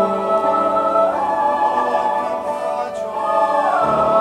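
Mixed choir singing sustained chords. The upper voices step up to a higher held note about a second in and slide back down near the end.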